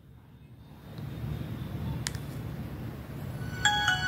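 Nokia 5030 XpressRadio playing its startup jingle through its small speaker as the phone boots: bell-like notes begin near the end. Before them there is a low rumble and a single faint click about two seconds in.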